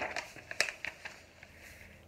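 A picture book's paper page being turned: a brief rustle with a few sharp crackles, dying away about a second in.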